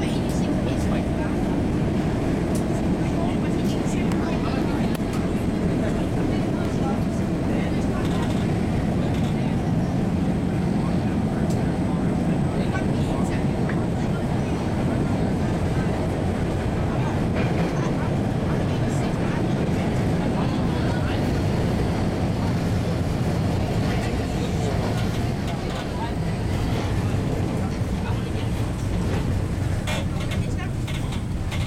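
MBTA Red Line subway train running on the rails, heard from inside the car as a steady loud rumble of wheels and motors. Near the end it is pulling in alongside a station platform.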